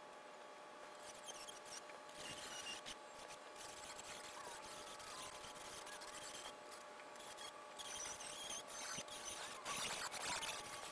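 Faint sounds of a thin aluminium rudder skin being handled and dimpled in a lever-operated DRDT-2 bench dimpler: rubbing and squeaks of the sheet sliding over the table, with a few sharp clicks. A faint steady hum runs underneath.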